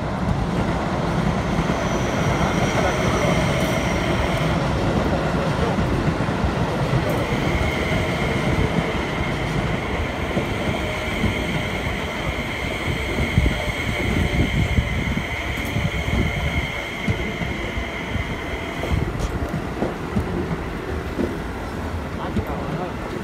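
Electric commuter train running slowly past on a tight curve: a steady low rumble of wheels on rail, with a high, steady wheel squeal on the curve from about seven seconds in that stops suddenly a few seconds before the end.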